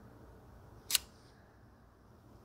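A single sharp plastic click from a Cosentyx Sensoready autoinjector pen as it is held against the thigh and lifted away, with a brief high ringing tail.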